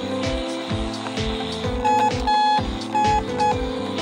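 Electronic beeps from a toy walkie-talkie, four of them starting about two seconds in, the second one longer, over background music with a steady beat.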